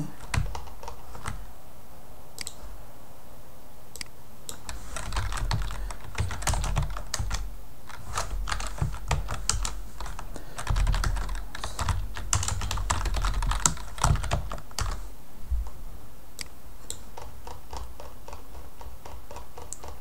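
Computer keyboard being typed on in irregular bursts of keystrokes with short pauses between them.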